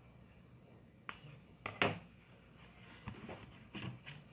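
Scissors snipping through thick kite-string thread: two sharp snips, one about a second in and a louder one just before two seconds, followed by a few softer clicks near the end.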